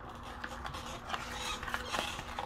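Faint rustling and small ticks as a sheet of wet-or-dry sandpaper is handled and picked up, a little busier towards the end.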